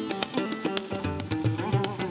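Live Indian classical music on tabla, a lap-held slide guitar and an electric guitar: gliding melody notes over quick tabla strokes and the tabla's deep resonant bass.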